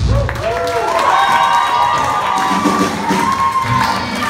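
Audience cheering and whooping with clapping at the end of a live rock song, with long rising-and-falling 'woo' shouts. The band's last low note stops right at the start.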